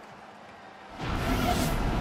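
Faint low background for about a second, then a sudden swelling whoosh and the music of a TV commercial coming in.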